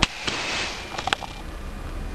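A homemade coilgun rifle firing: a single sharp crack as its capacitor bank dumps into the coil, followed by a brief hiss and two lighter clicks about a second later.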